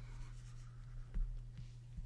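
Faint scratching of a Wacom Cintiq stylus nib stroking across the pen display's screen while painting, with a few light taps.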